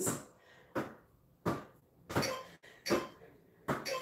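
A person doing a seated ball-around-the-legs core exercise with a netball: short, regular sounds about every three-quarters of a second as the legs switch and the ball is passed round, with quiet gaps between.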